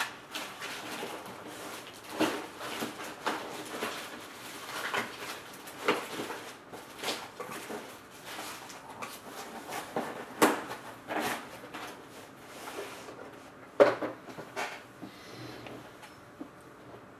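Sports cards and plastic card holders being handled on a table: irregular clicks, taps and rustles, with the sharpest knock about two seconds before the end.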